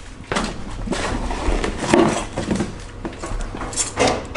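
Plastic packaging crinkling and rustling, with light knocks, as a new brake caliper is unwrapped and handled.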